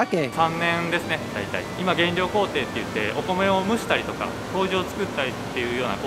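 A man speaking Japanese, talking steadily over a faint, steady background noise.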